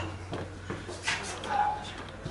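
Shuffling footsteps and rustling of several people moving about a small room, with scattered short knocks over a steady low hum and a brief indistinct vocal sound about one and a half seconds in.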